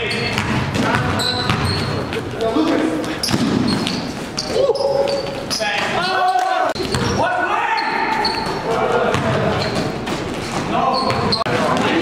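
Live sound of an indoor basketball game: the ball bouncing on the hardwood court, sneakers squeaking in short high chirps, and players' voices calling out, all echoing in a large gym.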